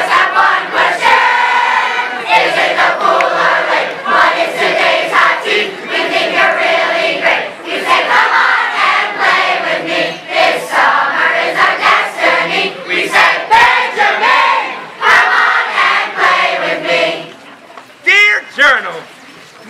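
A large group of children singing loudly together, many voices at once, breaking off shortly before the end.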